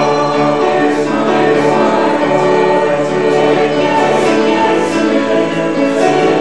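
Congregation singing a hymn in long, held notes over keyboard accompaniment.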